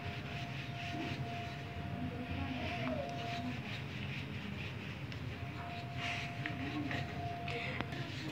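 Wooden rolling pin rolled back and forth over a three-layer spring roll wrapper on a stone slab, a steady low rumble as the dough is rolled thin. A faint thin steady tone sounds through the first few seconds and again from the middle to the end.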